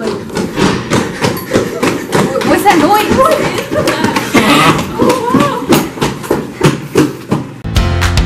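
Girls' voices, excited and indistinct, with laughter. Music starts abruptly near the end.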